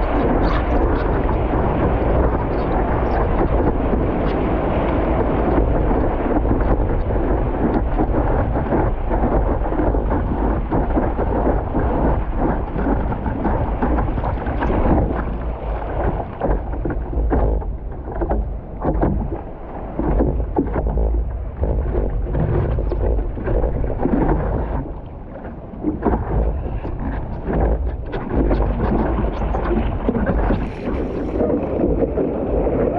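Surf water rushing and splashing against a surfboard-mounted camera, with wind buffeting the microphone, as the board runs through whitewater. The dense rush gives way to patchier splashes and slaps after about halfway.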